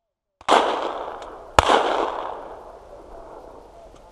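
Two shotgun shots at a sporting clays station, about a second apart, each trailing off in a long echo across the open field.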